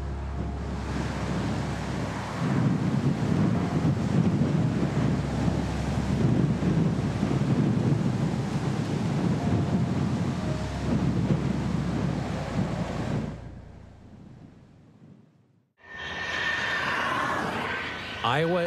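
Combine harvester working through dry standing corn: a steady engine drone under the rattle and rush of the header and threshing. It fades out from about 13 seconds in, and after a moment of near silence a different steady rushing noise begins near the end.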